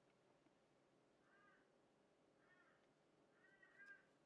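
Near silence broken by faint calls from a distant animal, each a short arched call, coming about once a second, with a double call near the end.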